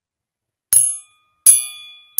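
Steel triangle struck twice, about a second apart, each strike ringing and dying away; the second is louder and rings longer.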